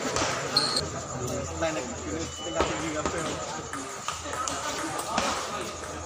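Table tennis ball clicking against the paddles and the table during a point, with a few sharp irregular ticks over background chatter.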